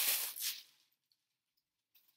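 Crinkling and rustling of wrapping being handled as an individually wrapped gift item is unwrapped by hand, lasting about a second.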